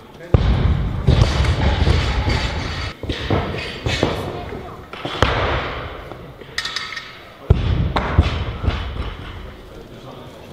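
Barbells with rubber bumper plates landing on lifting platforms: a series of heavy thuds, each followed by a low rumble and echo in a large hall, with voices in the background.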